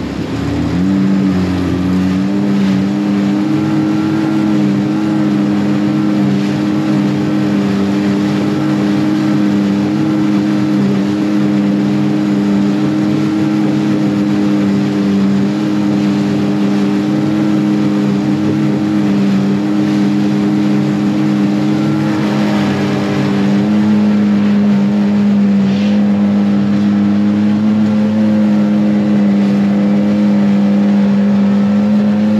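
Outboard motor pushing a small fishing boat along at speed, a steady engine note that climbs a step about a second in as more throttle is given, and climbs again about 23 seconds in. Water rushes along the hull underneath.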